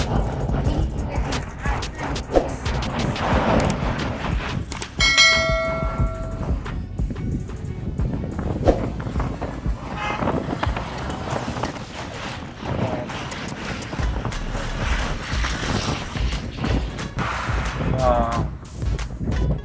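Engine and road noise inside a moving Maruti Gypsy, running through a road tunnel, with frequent small knocks and rattles. A horn sounds once about five seconds in and is held for about a second and a half.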